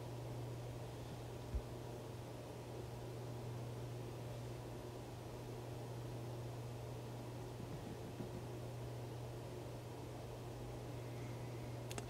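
Quiet room tone: a steady low hum with faint hiss, and one brief low thump about one and a half seconds in.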